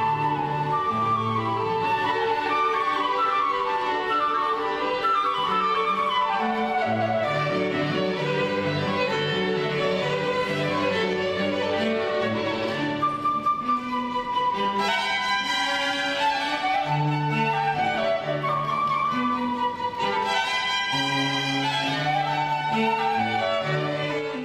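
Live classical chamber music from a flute quartet: flute, two upper bowed strings and cello playing together. A moving melody sits over a sustained low cello line.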